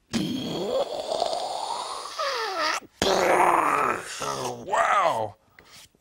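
A man's voice making a firework rocket sound effect: a rising whoosh for about two seconds that ends in a falling whistle, then, about three seconds in, a loud hissing burst for the explosion, and a last falling vocal glide near the end.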